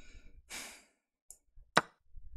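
A person sighing, a breathy exhale about half a second in, then a single sharp click near the end: the online chess board's capture sound effect as a knight takes a pawn.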